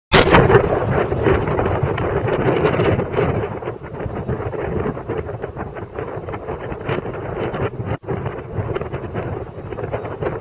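Wind buffeting a small camera's microphone: a loud, uneven rumbling with scattered crackles, loudest in the first three seconds.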